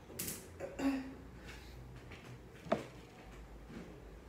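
A few brief handling noises at a kitchen stove, with one sharp click about two-thirds of the way through.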